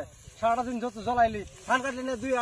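A man speaking Bengali in short phrases, with a brief pause just after the start and another about a second and a half in.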